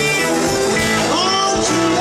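Live blues-rock band playing, with electric guitars over drums and keyboard, and a note bending upward about a second in.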